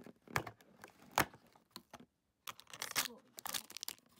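A cardboard advent calendar door being pressed and torn open, with sharp snaps about half a second and a second in. Then a small clear plastic bag crinkles as it is pulled out of the opening.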